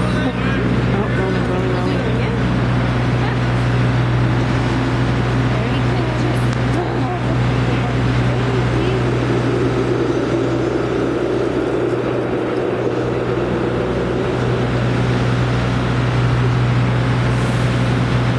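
A large motor running steadily with a low, even hum, over a constant hiss, with faint voices now and then.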